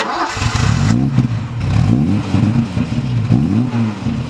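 Engine revving repeatedly, its pitch swinging up and down again and again. It starts abruptly with a burst of higher-pitched noise in the first second.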